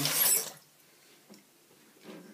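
Dovo Shavette razor blade scraping through lathered whiskers in one short stroke, a crisp rasp that stops about half a second in.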